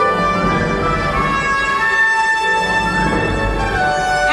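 Orchestral film score with long held notes.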